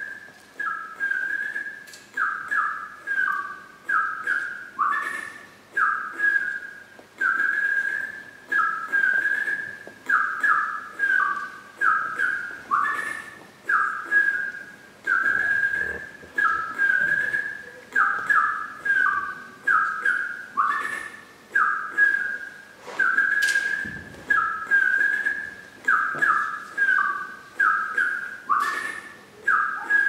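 A short tune whistled over and over in clear, high notes that slide slightly into pitch, about two notes a second, with a few soft knocks under it.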